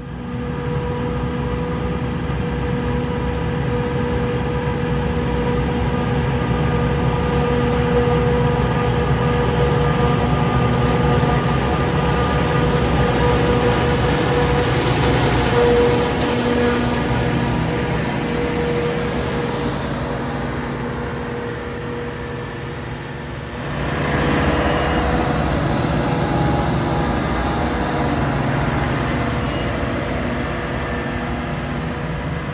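Farm machinery engine running at a steady speed, a constant droning hum. It eases off slightly about three quarters of the way through and then picks up again.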